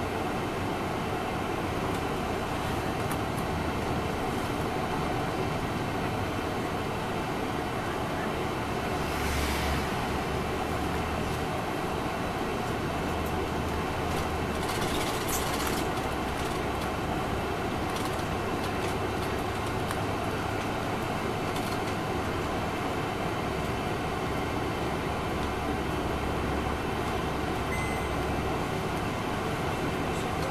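Inside a 2002 MCI D4000 coach under way: its Detroit Diesel Series 60 engine running with steady road and tyre noise in the cabin. There are brief hisses about nine seconds in and again around fifteen seconds.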